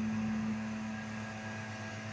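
A steady machine hum made of a low drone and several fixed tones, holding level throughout.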